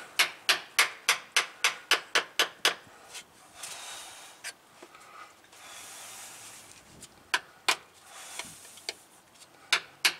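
Sharp metallic taps as a screwdriver is punched through the bottom of spin-on oil filter cans to drain them before removal: a quick, even run of about a dozen taps, roughly four a second, then a few scattered taps later on.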